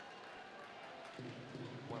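Faint ice-rink crowd noise, rising a little about a second in.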